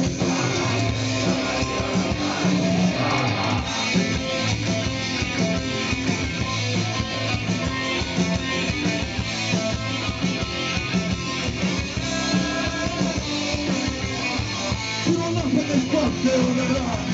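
Punk-folk band playing live and loud, full band music with a steady beat and held bass notes.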